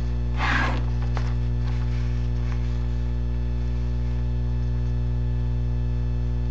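Loud, steady electrical mains hum with a buzzy edge, picked up through a webcam's microphone. There is a brief rustle about half a second in.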